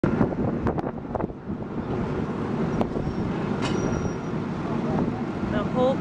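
Fire truck engine rumbling steadily as it drives up close. Several sharp clicks come in the first second and a half and a couple more around the middle, and a man's voice begins near the end.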